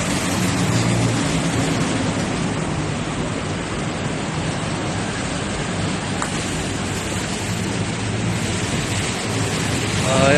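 Steady rushing noise of heavy rain, with a low steady hum underneath.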